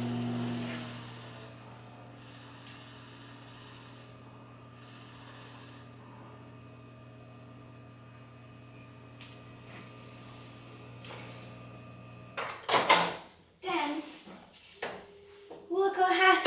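LG microwave oven running with a low, steady hum, which cuts off about twelve seconds in as it stops heating. Loud clatter and clicks follow, with the door being opened.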